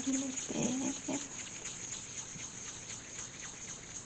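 Hands rounding a small ball of bread dough on a baking mat: a quick run of soft rubbing and tapping after a short spoken word at the start.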